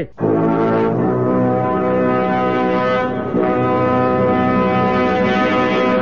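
Music: long, loud held brass chords that change about a second in and again a little past three seconds.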